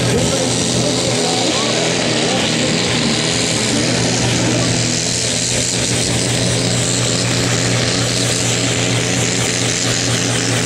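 Fiat pulling tractor's diesel engine running at full throttle under heavy load as it drags a weight sled down the track, a loud, steady engine note that holds through the pull.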